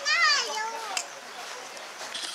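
A young child's high voice calling out in the first second, its pitch wavering and then falling away.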